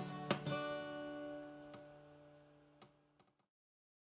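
Two acoustic guitars strike a final strummed chord about half a second in, which rings on and fades out over about three seconds. A few faint clicks sound as the chord dies away.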